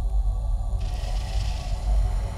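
Dark sound-design ambience for an animated film: a steady deep rumbling drone under faint held tones, with a hissing swell coming in a little under a second in.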